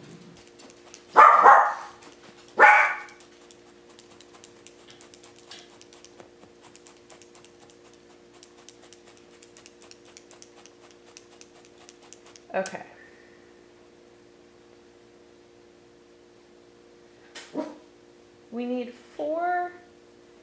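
A dog barking: two loud barks within the first three seconds, another about two-thirds of the way through, and a few shorter sounds near the end. Between the barks, faint rapid ticking from a multi-needle felting tool stabbing into wool, over a steady low hum.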